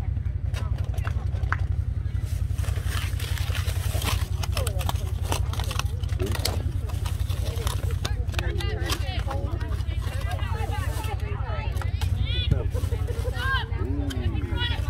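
Wind buffeting the microphone in a steady low rumble. Distant shouts and chatter from players and spectators come through, busier in the second half.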